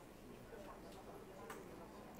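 Near silence: quiet room tone with a few faint clicks, the clearest about one and a half seconds in.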